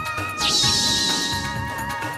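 Background music with a short, high-pitched, wavering sound effect laid over it about half a second in, lasting about a second.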